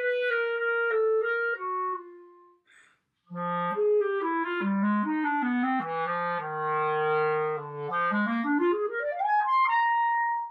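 Selmer Paris Présence B-flat clarinet of grenadilla wood played solo. A phrase ends on a held note about two seconds in, then comes a short pause. A new phrase starts in the low register and dwells on a long low note, then climbs in a quick run to a high note held at the end.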